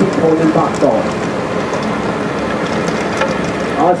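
Erkat hydraulic drum cutter on a mini excavator, its two pick-studded drums spinning down into soil: a steady, dense crackle of many small clicks as the picks strike earth and small stones.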